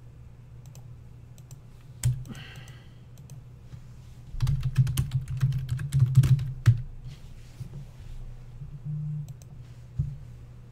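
Computer mouse clicks and keyboard clatter at a desk: a sharp knock about two seconds in, then a loud burst of rapid clicks and knocks lasting a couple of seconds, over a steady low hum.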